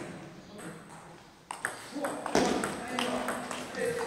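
Table tennis ball clicking sharply off the bats and the table in a rally. The hits start about a second and a half in and come every few tenths of a second, with hall echo.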